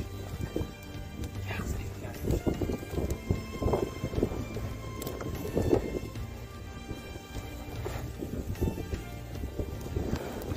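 Wind rumbling on the microphone and a large plastic tarp flapping, with a run of irregular knocks and flaps from about two to six seconds in as a wooden pole is worked into the ground. Steady background music plays underneath.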